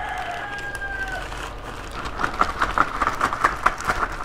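A clear plastic bag crinkling and rustling as jigsaw puzzle pieces are handled, starting about a second and a half in. Before it, a single long, steady high call is held for over a second.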